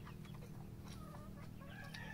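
A chicken clucking faintly, a few short calls over a low steady background hum.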